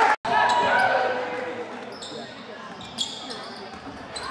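Basketball game sounds on a hardwood gym court: a ball bouncing, footfalls and sneaker squeaks, with the voices of players and spectators in the hall. A brief gap comes just after the start, and the sound fades somewhat over the first two seconds.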